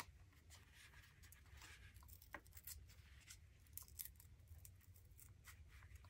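Near silence with faint, scattered rustles and small ticks of a paper card being handled and peeled by hand over a plastic bag.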